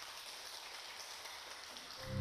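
Faint applause from a small group, an even patter of clapping.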